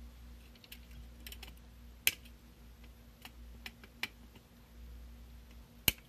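Flush-cut pliers snipping the excess wire leads off a freshly soldered circuit board: a series of sharp, irregular clicks, the loudest about two seconds in and near the end.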